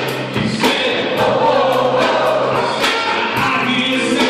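A live Christmas pop song: a man singing lead with a small choir of women singing along, over an electric keyboard with a steady beat about twice a second.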